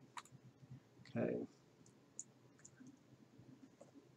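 A few faint computer mouse clicks, short and sharp, as a dialog's OK button and then a text box are clicked.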